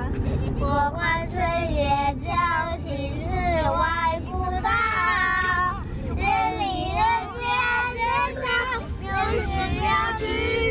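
Young children singing in high voices inside a car, over the low rumble of the moving car.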